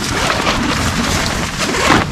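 Tent wall fabric rustling steadily as a loose panel is lifted and handled.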